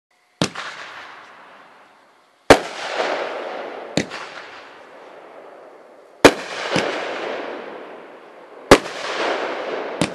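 Caliber 'World Champion' 500g firework cake firing shot after shot: a series of sharp bangs roughly every two seconds, three of them loudest. Each loud bang is followed by a crackle that fades over a second or two, from the peony shells' crackling centres.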